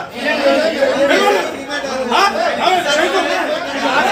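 Several men's voices talking over one another in an argument.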